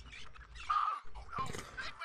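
Audio from an animated cartoon episode playing at moderate level: a few short, scattered sound effects with brief pitch glides, but no steady dialogue.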